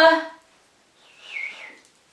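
A woman's voice calling to her cat at the start, rising in pitch, then a short, faint whistle falling in pitch about a second in.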